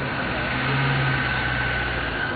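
A motor vehicle's engine running: a steady low hum with a thin higher whine over a noisy background.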